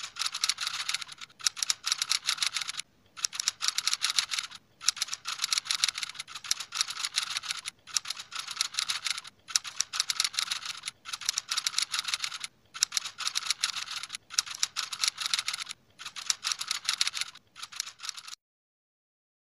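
Typing sound effect: rapid keyboard-style clicks in runs of one to two seconds with short pauses between, as text is typed out on screen.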